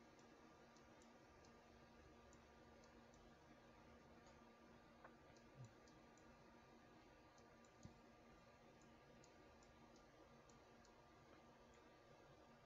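Near silence: faint steady hum with soft, scattered clicks of a stylus tapping on a tablet while writing, and a few slightly louder soft bumps in the second half.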